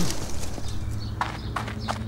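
Running footsteps on hard paving, a few sharp irregular steps, over a low steady drone.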